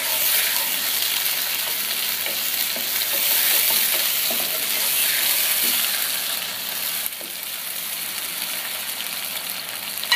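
Sliced onions sizzling in hot oil in a nonstick pan while a spatula stirs and scrapes through them. The stirring stops about seven seconds in, and the frying hiss goes on a little quieter.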